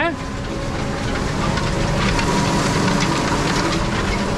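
Tractor engine running under load and picking up speed, heard inside the cab, as it pulls a disc harrow working through stubble; the engine sound rises over the first second or two and then holds steady, with a rattle from the harrow.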